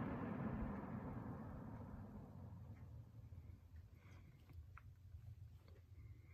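Vintage Gambles Coronado single-speed table fan coasting down after being switched off: the rush of air and the motor hum fade away steadily over about four seconds. A few faint clicks follow near the end.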